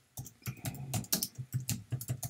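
Typing on a computer keyboard: a quick, irregular run of about a dozen keystrokes.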